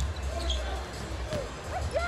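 A basketball being dribbled on a hardwood court, with a few short bounces, over a steady low rumble of the arena crowd.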